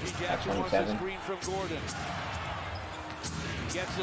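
Basketball dribbled on a hardwood court, short bounces over arena crowd noise.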